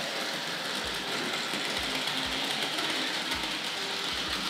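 Hornby Dublo 3-rail model locomotive running along the track under power, its electric motor and wheels making a steady whirr, with irregular soft low knocks.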